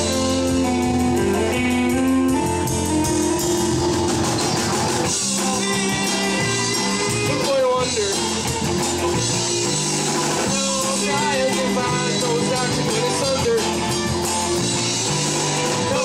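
Live rock band playing: electric guitars, Hammond XK-1 organ and drum kit, with held organ-like chords in the first few seconds and a wavering lead line over the band from about halfway through.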